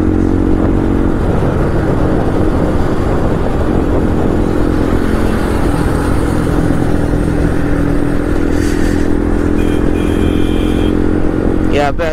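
Bajaj Pulsar 125's single-cylinder engine running at steady highway cruising speed, heard from the rider's seat with heavy wind rush on the action camera's microphone.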